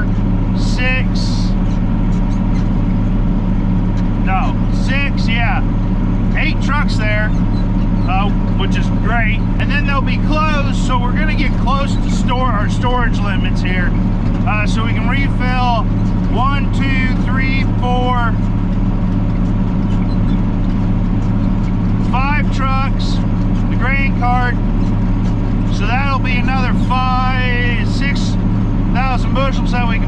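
A man talking over the steady drone of a tractor engine, heard from inside the cab.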